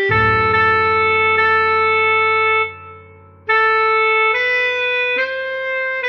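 Tenor saxophone playing a slow melody from sheet music. Long held notes come first, then a short break about halfway, then a few notes stepping upward.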